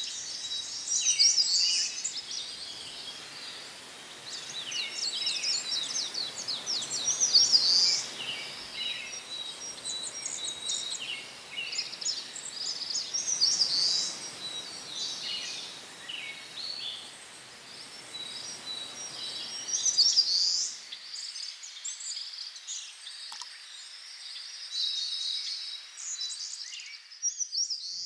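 Birds chirping and singing in many short calls and trills, over a soft rustling haze of wind in trees that drops away about three-quarters of the way through, with a thin steady high tone running underneath.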